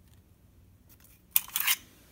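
A short scraping rustle from hand-held objects being handled, about one and a half seconds in.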